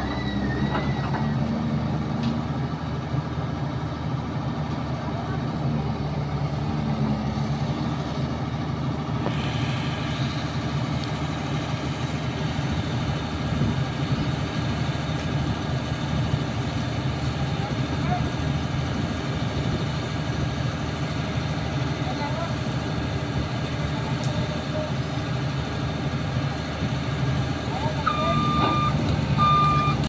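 Caterpillar 320C hydraulic excavator's diesel engine running steadily under work. A couple of short high beeps sound near the end.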